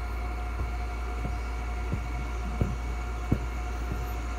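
A steady low hum with a faint steady tone above it, broken by four soft knocks at an even pace, a little under a second apart.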